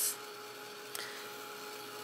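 Handheld hair dryer running steadily over a wet watercolor painting to dry it: a constant rush of air with a steady motor hum.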